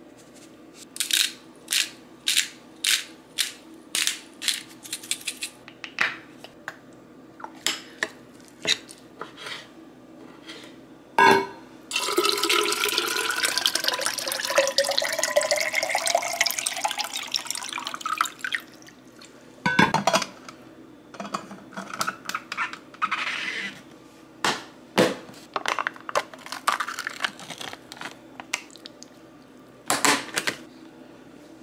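A seasoning shaker shaken in quick taps, about two or three a second, over a bowl. Later a few knocks and then water poured from a plastic pitcher into a stainless-steel tumbler, the pitch rising steadily as it fills. Scattered clicks and kitchen handling sounds follow.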